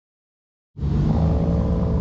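Silence, then about three-quarters of a second in a steady low rumble of car engines idling starts abruptly.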